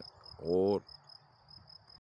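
Crickets chirping steadily in the grass, a thin high-pitched chirp repeated several times a second.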